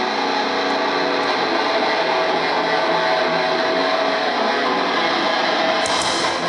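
A metalcore band playing live at high volume, mostly heavily distorted electric guitars holding sustained notes in a dense, even wall of sound.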